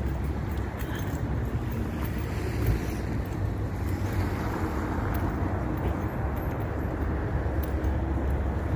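Steady low rumble of outdoor city noise: distant road traffic mixed with wind buffeting the phone's microphone.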